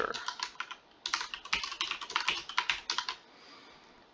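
Rapid keystrokes on a computer keyboard as a password is typed, with a brief pause about a second in and the typing stopping about three seconds in.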